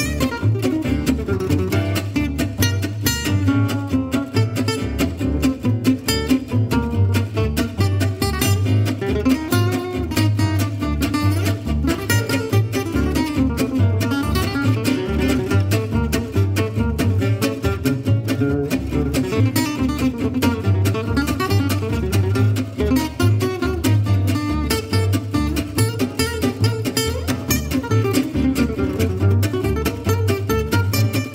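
Fast gypsy jazz tune played by two acoustic guitars and a plucked double bass, with the guitars' dense strummed and picked notes over a steady bass pulse.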